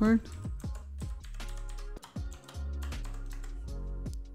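Computer keyboard typing a password: a run of separate, irregular keystrokes over background music with sustained low notes.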